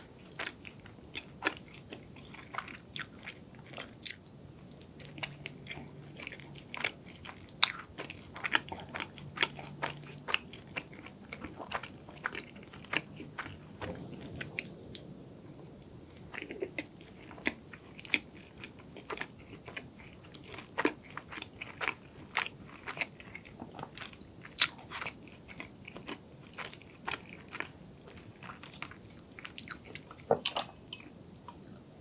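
Close-miked mouth biting and chewing crusty pastry, with many sharp, irregular crunches and crackles throughout, recorded for eating ASMR.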